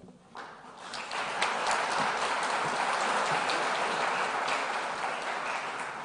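Audience applauding: the clapping builds over the first second or so, then holds steady.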